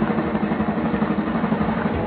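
A steady low rumbling drone with a fast, even flutter.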